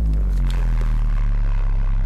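A loud, deep drone from a suspense soundtrack. A tone slides down in the first second, then the drone holds steady.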